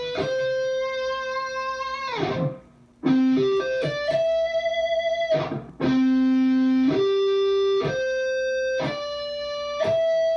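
Distorted electric guitar playing the slow version of a melodic shred lick, one note at a time. It holds single notes for about a second each and plays a quick little run of picked notes about three seconds in. Twice, near two and a half and five and a half seconds, a note slides down in pitch and dies away.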